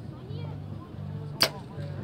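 A bow being shot: one sharp crack of the released string about one and a half seconds in.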